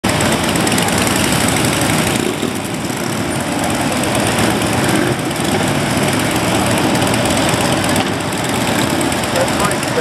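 Engines of a large group of cruiser and touring motorcycles idling and riding off together, a loud, steady din of many engines at once.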